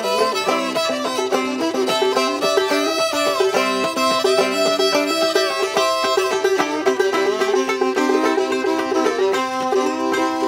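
Open-back banjo and fiddle playing together in an instrumental passage of an old-time tune, the banjo's plucked notes under the fiddle's bowed melody.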